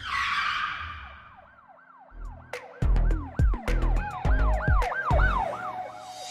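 Channel logo sting: a whoosh, then a siren-like tone rising and falling about three times a second. About two and a half seconds in, heavy bass drum hits and sharp clicks join it.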